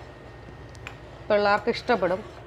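A woman's voice speaking, starting about two-thirds of the way in. Before it there is a low steady background, with two faint clicks of a spoon against the pan as the gravy is stirred.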